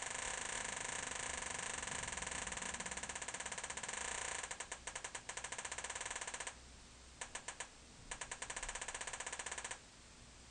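A homemade metal detector's audio output is a quiet, rapid ticking buzz while a quarter is held by the search coil. About four and a half seconds in the buzz turns choppy. It cuts out a little after six seconds, returns in short bursts, then runs again briefly and stops just before the end.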